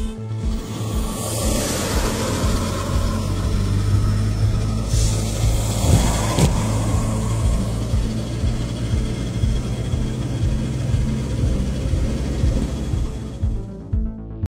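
Steady low drone of a truck's engine and tyres heard inside the cab, with music playing along. There is a short knock about six and a half seconds in.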